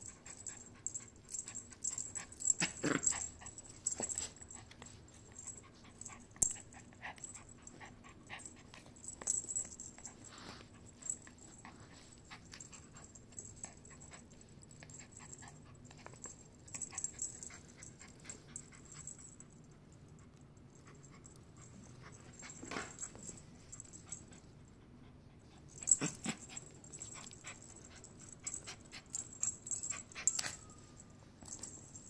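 Small poodle playing tug-of-war with a knotted rope toy: short, breathy dog noises and low growls come in scattered bursts, the strongest about three seconds in and twice near the end. Soft clicks and scuffs of the toy and paws on the rug run between them.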